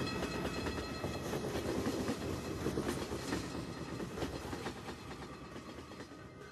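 Rumbling, clattering mechanical noise with a few steady high tones above it, slowly fading toward the end.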